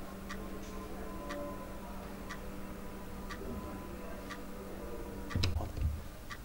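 A clock ticking steadily, about one tick a second, over a faint low steady hum, with a soft low thump near the end.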